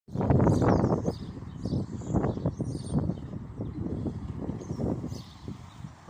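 Irregular low rumbling noise on a phone's microphone, loudest in the first second and then continuing more quietly.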